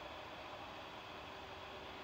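Faint steady hiss of quiet outdoor background, with no distinct sound standing out.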